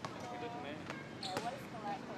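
A basketball bouncing on a hard outdoor court, a couple of sharp thuds, over voices talking.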